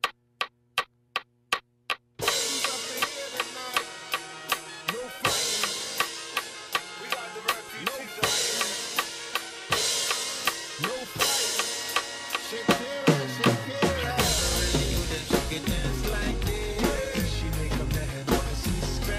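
About two seconds of evenly spaced count-in clicks, roughly two and a half a second, over a held chord. Then a drum kit comes in with a backing track, snare, kick and cymbals playing a steady rock beat, and a heavy low bass line joins about fourteen seconds in.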